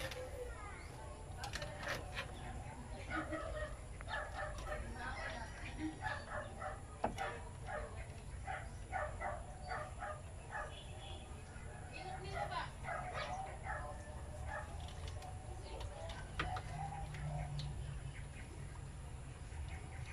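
Chickens clucking in the background, in short scattered calls, with a few light clicks from the wiring being handled.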